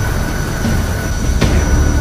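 Trailer sound design: a heavy low rumbling drone under a steady high-pitched metallic squeal, with one sharp hit about one and a half seconds in.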